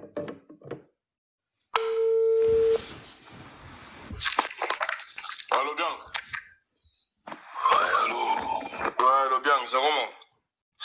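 A single steady electronic beep, about a second long, a little under two seconds in. It is followed by voices from a played-back livestream recording.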